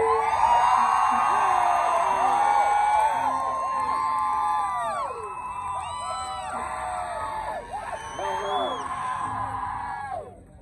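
Crowd cheering, whooping and yelling at the end of a song, many voices at once, loudest at first and gradually dying down over the last several seconds.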